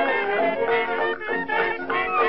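Lively background music: a quick melody of short held notes over a steady accompaniment.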